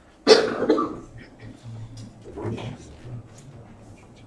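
A person coughing: a sudden loud cough of two quick bursts about a quarter second in, followed by faint murmured voices in the room.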